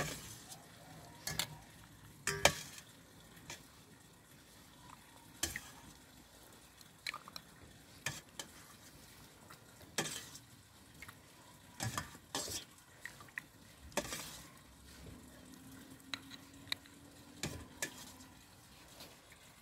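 Metal spoon clinking and scraping in a stainless steel bowl of brine as boiled mushrooms are spooned out into a glass jar. About a dozen irregular clinks, the loudest about two and a half seconds in.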